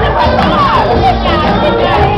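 Loud pop music playing while a crowd cheers and shouts around a live performer.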